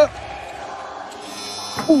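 Arena end-of-period buzzer sounding as the game clock runs out, a steady electric buzz starting about a second in and still going at the end.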